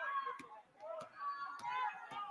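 Faint basketball-gym ambience under the broadcast: many spectators' voices overlapping, with high sneaker squeaks on the hardwood court and a few sharp knocks.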